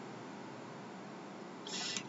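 Faint steady hiss of room tone and microphone noise, with a brief louder hiss near the end.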